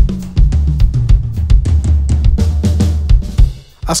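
Pearl Decade Maple drum kit with 6-ply maple shells played with sticks. A run of quick drum and cymbal hits rings over a sustained low drum resonance, which dies away shortly before the end.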